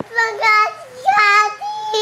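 Young boy crying in high-pitched wails, several drawn-out cries one after another, the last one held long.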